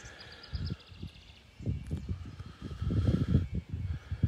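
Wind buffeting a handheld phone microphone in uneven gusts, loudest about three seconds in. Over it, a bird sings a quick run of high notes in the first second or so.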